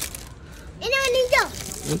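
Light clinks and plastic-wrapper rustling as packaged foam toy gliders are moved on metal store display hooks. A child's high, drawn-out vocal exclamation comes in about a second in.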